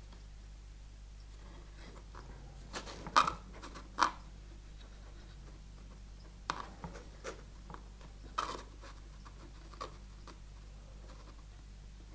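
Hands tying a knot in the tensioning thread of a wooden frame saw: faint rubbing and scratching of fingers and thread, with a scattering of sharp clicks, the loudest two about three and four seconds in.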